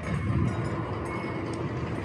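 Wind buffeting the microphone outdoors, an uneven low rumble.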